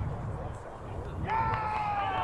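Touchline voices: after about a second of quiet background rumble, a man starts a long, drawn-out high yell, with other shouts under it.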